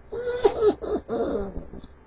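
A man laughing in a run of short voiced bursts.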